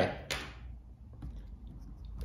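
Faint handling noise: one short sharp click about a third of a second in, then a few soft ticks, as a hand reaches toward the plastic robot car chassis.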